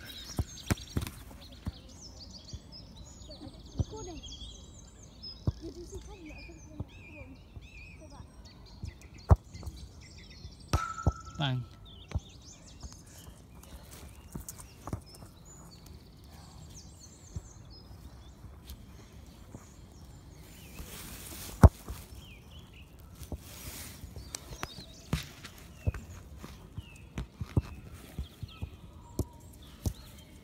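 Outdoor ambience picked up by a phone lying in long grass: faint, distant voices, a few high chirps, and scattered clicks and rustles from grass against the microphone. One sharp knock stands out about two-thirds of the way through.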